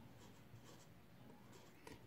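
Faint scratching of a felt-tip marker writing digits on paper.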